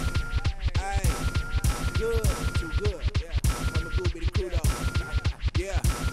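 Hip hop track in an instrumental stretch between rapped lines: a heavy, steady bass beat with turntable-scratch sweeps arching up and down in pitch.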